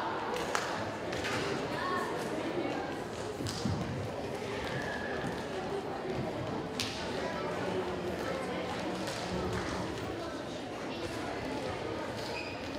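Indistinct murmur of many voices in a large hall, with a few scattered thumps and taps at irregular times.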